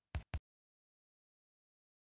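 Two short, soft knocks about a fifth of a second apart, then dead silence.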